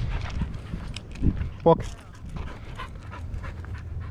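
A young Australian cattle dog panting quickly in short, breathy puffs.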